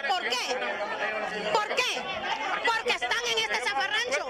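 Several people talking over one another at once, overlapping voices with no single clear speaker.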